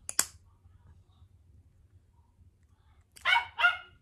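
Two sharp clicks right at the start as the hinged lid of an electric lighter is flipped open, then a dog barking twice near the end.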